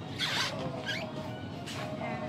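Two brief swishes of nylon jacket fabric as arms swing up, over a steady shop hum with faint music.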